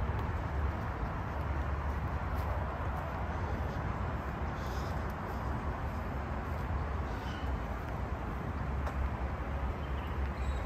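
Steady outdoor background noise with a low rumble, and faint short bird chirps about halfway through and again a couple of seconds later.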